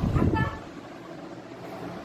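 A short horn-like toot over a brief low rumble in the first half-second, then a steady low background.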